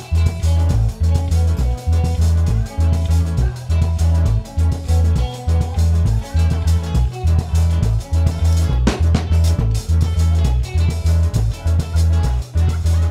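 Live band playing a traditional Seychellois song: bass guitar, drum kit and guitars, with a heavy, steady bass pulse driving the rhythm.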